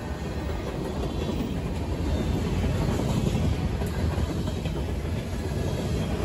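Freight cars (covered hoppers and tank cars) rolling past close by: steady noise of steel wheels running on the rails.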